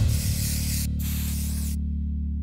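Two hisses of an aerosol spray-paint can, each a little under a second, over a steady low music drone.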